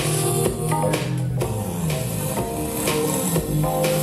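Dance-battle music playing over the venue's sound system: a steady beat under pitched bass and melody lines, thinning out for a moment about a second in.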